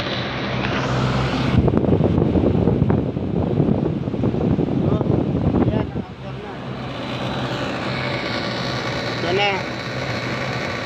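Carrier split-type air conditioner outdoor unit running, with a steady low hum from the compressor and condenser fan, and a louder rush of noise from about one and a half seconds in to about six seconds. The hum shows the unit now starts on its newly fitted magnetic contactor.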